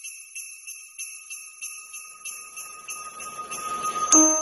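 Small bells jingling: a steady high ringing with a faint regular shake about three times a second, growing slowly louder.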